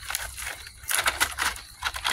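Irregular rustling and crackling clicks of dry palm fibres, fronds and leaf litter being handled or brushed at a coconut palm, with a denser cluster about a second in and another near the end.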